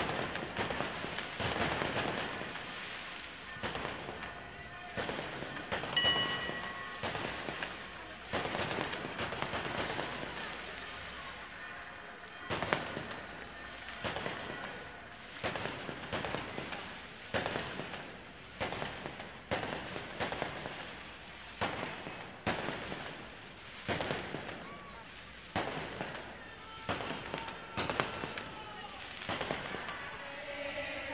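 Fireworks bangs going off one after another, unevenly spaced at about one a second, each with a short fading echo. A short high whistle sounds about six seconds in.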